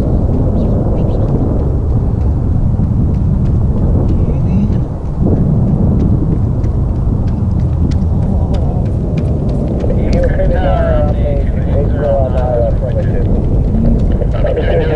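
Deep, steady jet rumble rolling across the airfield, with a brief dip about five seconds in. Voices talk over it from about ten seconds in.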